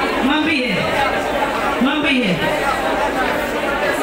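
A congregation praying aloud all at once, many voices overlapping into a continuous babble in a large hall. One louder voice cries out above the rest twice.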